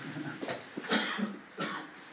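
A person coughing a few short times, loudest about a second in.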